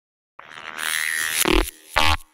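Opening of an electronic music track: a buzzing synthesizer sound that comes in about half a second in and lasts about a second, then a deep bass hit, with a second one starting near the end.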